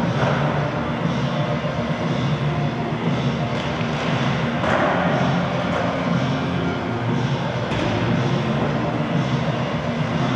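Skateboard wheels rolling on pavement: a steady rumble with a few faint clicks.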